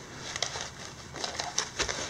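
Light rustling and scattered small clicks and taps as a small quadcopter is worked out of a snug foam packing insert by hand.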